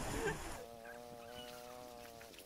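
Splashing water in the first half-second, then one long vocal call on a steady pitch, held for nearly two seconds and fairly faint.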